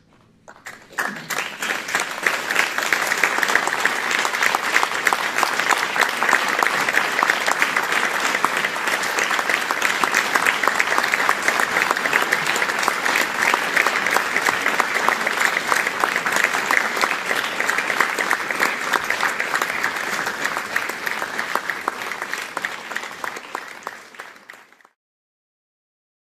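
Audience applauding: dense clapping that starts about half a second in, swells over the next couple of seconds, holds steady and thins out near the end.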